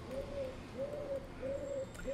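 A bird calling in the background: a soft, slightly arched hooting note repeated evenly, about three times in two seconds.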